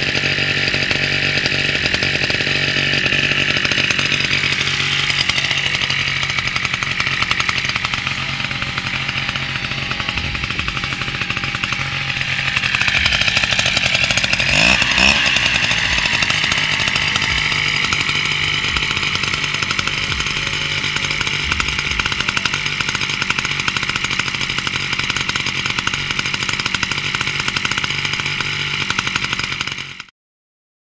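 Small two-stroke engine of a motorized backpack sprayer running steadily at high speed while spraying pesticide over rice, its pitch dipping and rising once about halfway through.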